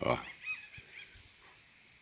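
Songbirds chirping: a few short, high calls that bend up and down, a cluster in the first half second and another about a second in.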